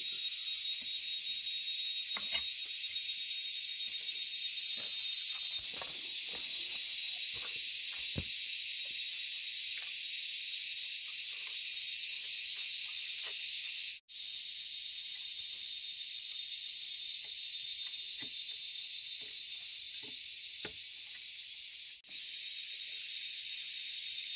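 A steady, high-pitched insect chorus, with scattered light clicks and taps from hand work with pliers and wire. The sound cuts out for an instant twice.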